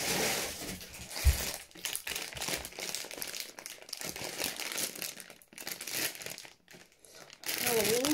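Plastic sweet packets crinkling as they are handled and shaken, with a sharp thump about a second in.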